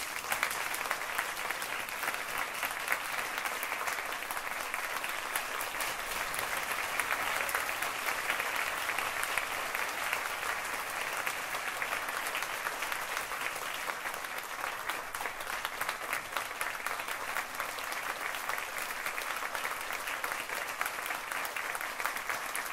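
Audience applauding, many hands clapping in a steady, unbroken round.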